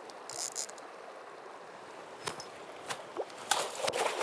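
Running river water with a hooked Atlantic salmon splashing at the surface, then a few sharp splashes in the last second or so as the fish is scooped into a landing net.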